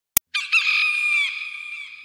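A brief click, then a rooster crowing once for about a second and a half, high-pitched and sped up.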